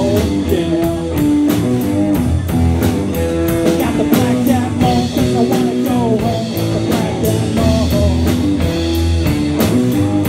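Live blues-rock band playing an instrumental passage: amplified electric guitars with bending lead notes over bass and a steady drum-kit beat.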